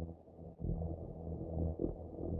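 Low, rumbling ambient music drone that swells about half a second in.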